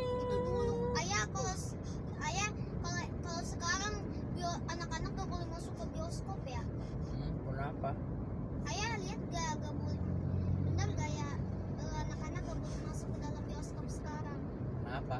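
A car's cabin while driving, with the steady low rumble of engine and road noise and people talking throughout. A steady pitched tone lasts about a second at the very start.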